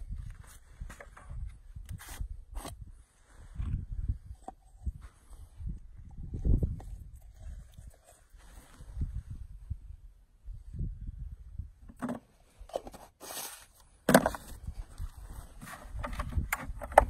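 Hand-work noises from baiting a coyote dirt-hole trap set: small clicks, scrapes and knocks as a bait jar and a stick are handled over a low rumble, with a louder clatter about twelve to fourteen seconds in and the sharpest knock near fourteen seconds.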